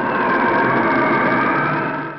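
A loud, steady siren-like wail: several high tones held together over a dense, rushing bed of noise, starting abruptly on a hard cut.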